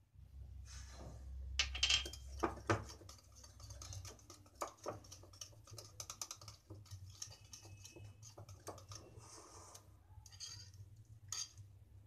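Wire whisk stirring thick semolina-and-yogurt batter for rava idli in a glass bowl: a run of irregular small clicks and scrapes of metal against glass.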